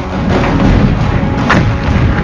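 Battle explosions: a dense, low rumble with one sharp crack about one and a half seconds in.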